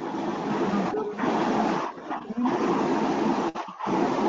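Loud, noisy background sound coming through a meeting participant's unmuted microphone, with faint pitched tones mixed into the noise. It breaks off briefly a few times.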